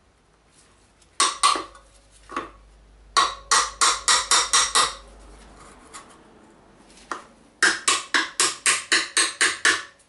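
Hammer tapping a flat bar set in the slots of a BSA B25 rear hub's threaded bearing retainer, to tighten it. The light metallic taps come in short runs, about three to four a second: a few about a second in, then a run of about seven from three seconds in, then a longer run of about nine near the end.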